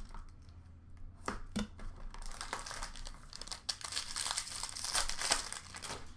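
Card-pack wrapper crinkling and tearing as it is ripped open, in a dense run of irregular crackles from about two seconds in. Two sharp knocks come just before, about a second in.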